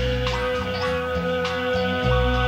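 Live late-1960s progressive rock band jamming: a long held high note over a moving bass line and percussion.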